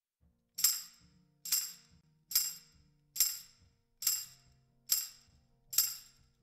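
A recorded tambourine track plays on its own, about seven evenly spaced strikes, one roughly every 0.85 seconds. Each is a bright jingle that dies away quickly, with faint low notes underneath.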